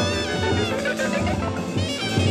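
Free jazz ensemble playing live: a horn's high notes slide downward in pitch over bass and drums, with a rising slide near the end.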